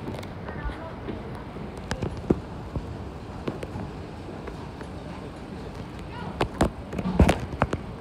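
Underground train station ambience: a steady background hum with faint distant voices. It is broken by a few sharp knocks around two seconds in and a louder cluster of knocks about six to seven and a half seconds in.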